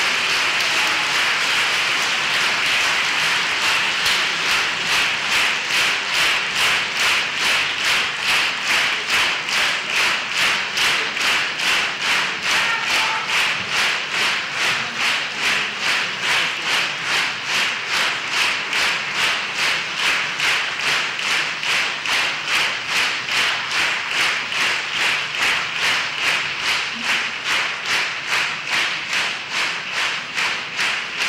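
Concert hall audience applauding, the scattered clapping falling after about four seconds into slow rhythmic clapping in unison that keeps a steady beat.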